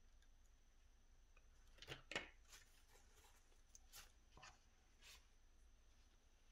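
Near silence broken by a few faint clicks and rubs of fingers handling tiny model kit parts and a super glue tube, the clearest pair about two seconds in.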